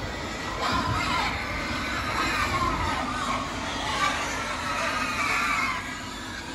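A pen of pigs squealing and grunting all at once, many overlapping cries, as hungry pigs jostle and compete for feed at a round feeder.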